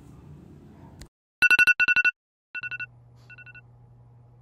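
Electronic ringer going off in four short bursts of rapid beeps, the first two loud and the last two fainter, after a single click about a second in. A faint steady low hum comes in around the third burst.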